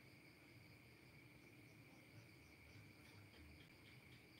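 Near silence with a faint, steady high-pitched chirring of crickets in the background.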